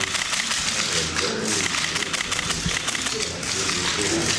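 Many press camera shutters clicking in quick, overlapping succession over a low murmur of voices.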